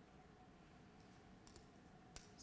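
Near silence: faint room tone with a faint click or two near the end.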